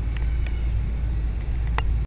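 Steady low outdoor rumble, with a few faint short chirps or clicks near the start and one near the end.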